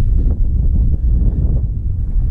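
Wind buffeting the camera's microphone: a loud, gusty low rumble.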